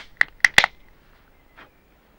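Sharp clicks of a beer can's metal ring-pull tab being levered with the fingers: four in quick succession, the last a double, then it stops.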